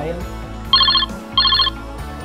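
Electronic telephone ring: two short, rapidly pulsing trills about half a second apart, over quiet background music.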